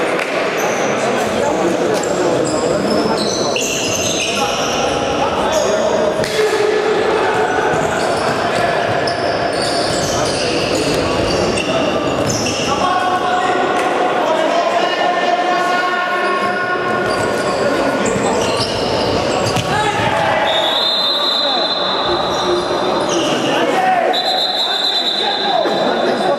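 Indoor futsal play echoing in a large sports hall: the ball being kicked and bouncing on the hard court, players' shoes squeaking in many short high chirps, and shouted calls between players.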